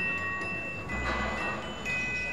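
Bell-like struck notes play a slow tune, a new note about every second, each ringing on over the murmur of a crowd.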